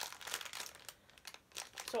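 Clear plastic packaging crinkling as it is handled, busiest in the first second and then dying down.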